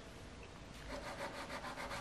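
Soft pastel stick rubbing and scraping on paper in short strokes, faint at first and a little louder from about a second in.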